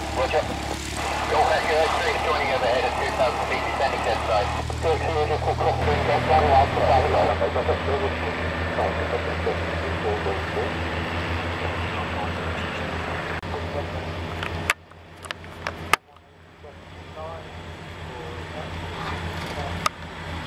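Piper PA-28 light aircraft's piston engine and propeller running at low power with a steady, even throb, mixed with people's voices in the first several seconds. About 15 s in, the sound cuts out abruptly for about a second with a few clicks, then comes back quieter and builds up again.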